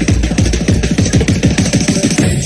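Electronic bass music from a DJ set: rapid, stuttering bass notes that each slide downward in pitch, about eight a second, over a hissing high end.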